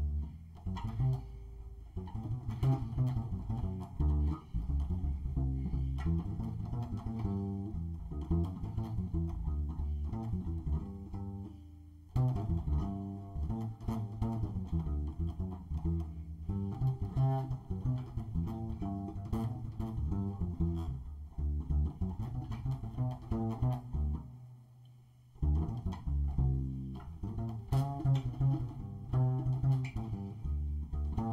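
Upright double bass played pizzicato: a continuous line of plucked low notes, with a short pause about twenty-five seconds in.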